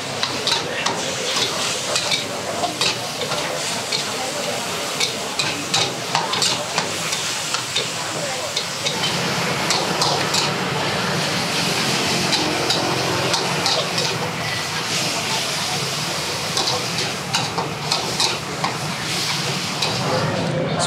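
Wok stir-frying: minced pork and chillies sizzling in a steel wok over a high gas flame, while a metal spatula scrapes and knocks against the wok in quick, irregular strokes.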